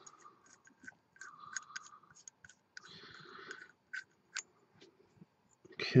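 Faint, scattered small clicks and brief scrapes of a black-and-copper mechanical vape mod's metal parts being handled: the tube, caps and battery clicking and sliding against each other, about a dozen light clicks with two short scrapes.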